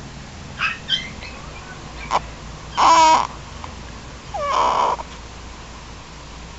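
A one-month-old baby making short fussy vocal sounds: faint squeaks early, then a brief pitched cry about three seconds in and a breathier one about four and a half seconds in.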